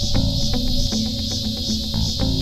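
Background music with plucked notes over a steady, high-pitched insect chorus that swells about two or three times a second.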